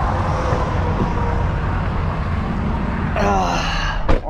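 Steady vehicle and road traffic noise, with a brief vocal sound near the end.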